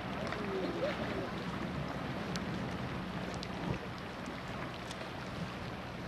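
Steady wind noise on the open deck of a tour boat over the low, even hum of the boat's engine, with faint voices in the first second.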